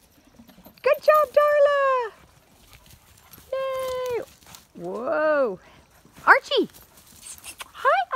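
Puppies yipping and barking while play-wrestling: a handful of short, high-pitched calls with pauses between them, some held briefly and some sharply rising and falling.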